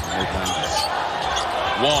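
A basketball being dribbled on a hardwood court, a series of low bounces under steady arena crowd noise.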